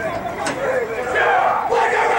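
A rugby team in a huddle shouting together: a group team chant of many young male voices, swelling into a loud, long held shout in the second half.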